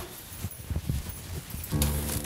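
A few soft, dull thuds of bare feet stepping over a floor. Near the end, background music comes in with sustained notes.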